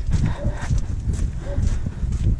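Footsteps on the stone walkway of a town wall, a steady walking pace of about two steps a second, over a continuous low rumble.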